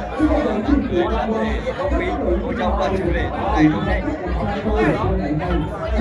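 Many people talking over one another: the steady chatter of a crowded room of guests, with no single voice standing out.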